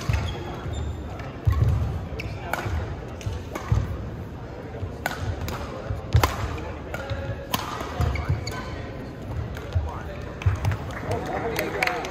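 Badminton rally on an indoor court: sharp racket strikes on the shuttlecock about once a second, with dull thuds of players' feet landing and pushing off the court floor. Voices rise near the end.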